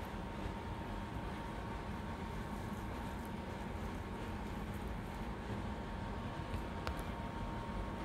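Steady low hum and hiss of background room noise, with one faint click about seven seconds in.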